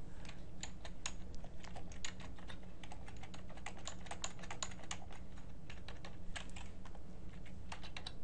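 Typing on a computer keyboard: a run of quick, irregular keystrokes, over a faint steady low hum.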